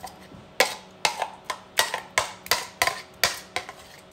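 A spoon scraping and knocking against the inside of a jug as thick avocado-lime dressing is scraped out, in a run of about nine sharp knocks, two or three a second.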